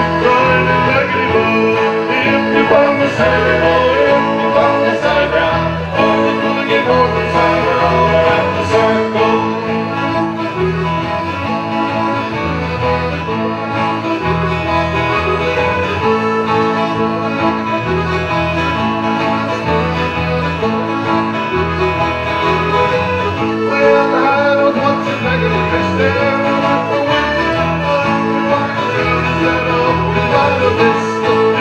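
Acoustic string band playing an instrumental passage in a bluegrass/folk style: strummed acoustic guitars with plucked lead lines over a steady beat, without singing.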